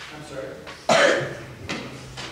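A person coughs hard about a second in, followed by a softer cough.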